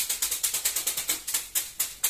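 Two bundles of split bamboo sticks slapping a person's back and legs through clothing in a percussive bamboo-whisk massage: a fast, even, dry rattling swish of about seven strikes a second.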